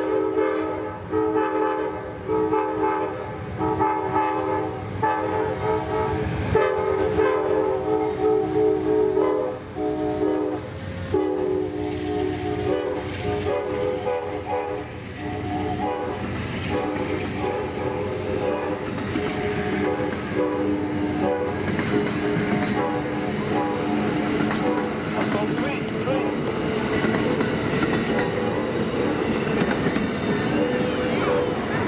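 Amtrak diesel passenger locomotive sounding its air horn in a series of chord blasts with short breaks as it approaches. In the second half, its passenger cars pass close by, with the wheels clicking over the rail joints and a steady rushing rumble.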